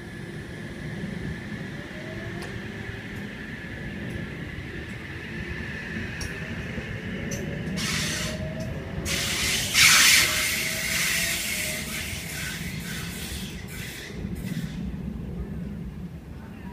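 Double-deck OSCAR H-set electric train accelerating away from the platform, its traction motors whining in a slowly rising pitch over a rumble of wheels. A loud burst of hissing noise comes about eight to eleven seconds in.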